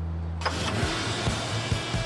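A low held musical note that ends within the first second. Then comes a steady wash of street and traffic noise that starts abruptly about half a second in.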